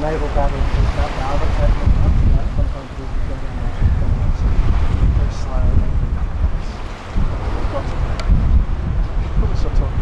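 Wind buffeting the microphone in loud, uneven gusts on the deck of a tall ship under sail, its motor off, with harbour water washing along the hull. Faint voices come through in the first couple of seconds.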